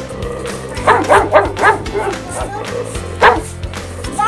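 Doberman Pinscher puppy barking: a quick run of four or five barks about a second in, then one more bark near the end, over background music.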